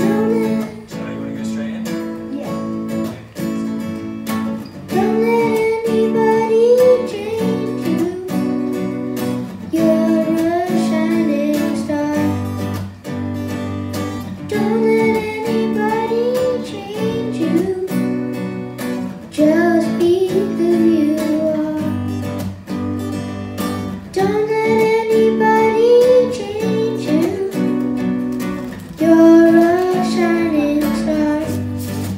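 Acoustic guitar strummed in a steady rhythm, with a boy singing sung phrases over it that come in about five seconds in and return every few seconds, amplified through a live PA.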